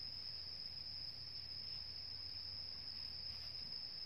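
Steady, high-pitched drone of insects such as crickets or cicadas, one unbroken tone throughout, over a faint low rumble.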